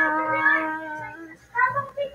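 A singer holding one long unaccompanied note of a Visayan song, fading away after about a second and a half, then a short note near the end.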